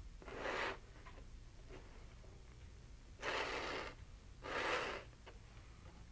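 Steel palette knife smearing thick heavy-body acrylic paint across a canvas: three short scraping strokes, one just after the start and two close together past the middle.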